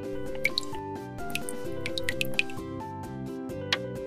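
Background music with about half a dozen short, high dripping plinks scattered over it as cooking oil is poured from a miniature glass bottle into a bowl of flour.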